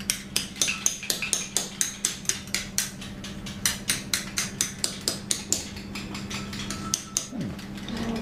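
Stone carver's round mallet striking a small chisel into a stone block, carving leaf foliage: quick, even taps at about four a second, spacing out near the end. A steady low hum runs underneath and fades shortly before the end.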